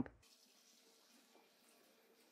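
Near silence: only a faint steady hiss.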